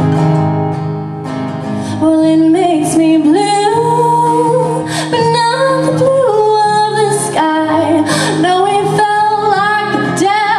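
Acoustic guitar strummed in a slow song, with a woman's voice coming in about two seconds in and singing a bending melody over it.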